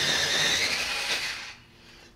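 A graphite pencil being ground in a pencil sharpener: a steady grinding that stops about a second and a half in.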